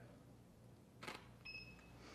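Faint camera shutter click about a second in as a test shot is taken, followed about half a second later by a short, high electronic beep.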